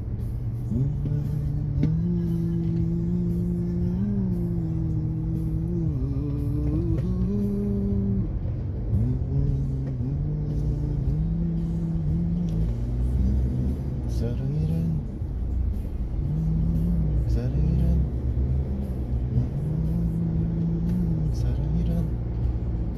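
A man humming a slow tune without words in long held notes that slide from one pitch to the next, over the steady low rumble of a moving car's cabin.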